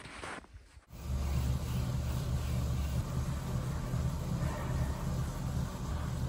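Indoor bike trainer running under a road bike being pedalled: a steady low drone that starts suddenly about a second in.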